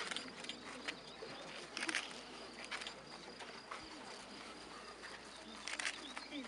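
Quiet open-air ambience of a standing crowd: a faint steady high insect or bird call over a soft background haze, broken by a few short sharp scuffs and knocks, the loudest about two seconds in and just before the end.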